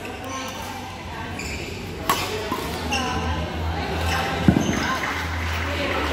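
Badminton rally: a sharp crack of a racket striking the shuttlecock about two seconds in, then a louder dull thud a couple of seconds later, over a steady low hum and background chatter.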